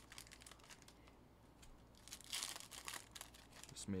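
Foil trading-card pack wrappers crinkling as they are handled, in short faint rustles with a louder crinkle about two and a half seconds in.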